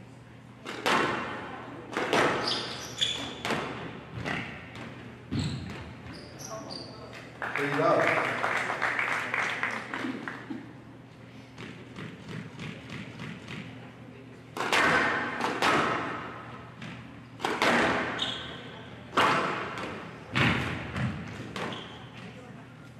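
Squash ball cracking off rackets and the walls of a glass court in a rally, a sharp hit every second or so. The hits give way about seven seconds in to a few seconds of crowd noise as the point ends. A second run of hits follows from about halfway through.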